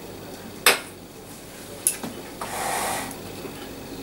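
A metal spoon knocking against the stainless-steel mixing bowl of a Thermomix TM31: a sharp clink just under a second in, a lighter one about a second later, then a short scrape as a sample of the cream is scooped out.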